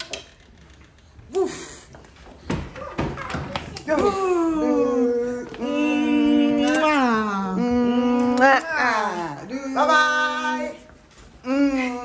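Young children's voices in long, drawn-out sung phrases from about four seconds in, after a few quieter seconds with some knocks.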